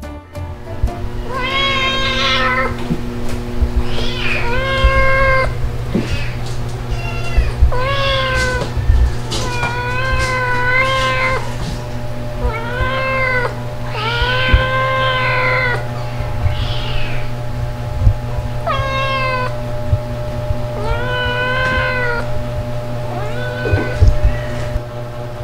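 A young ginger cat meowing loudly and repeatedly, about ten drawn-out meows of a second or so each with short gaps between them, demanding food.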